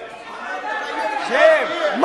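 Chatter of many voices in a parliamentary chamber, with one voice rising briefly above the murmur about one and a half seconds in.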